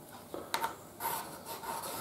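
Pencil scratching lines across a fibreboard sheet against a metal ruler, in short soft strokes, with a light click about half a second in.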